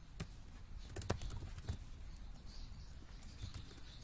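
Faint computer keyboard typing: a scatter of single keystrokes at irregular intervals.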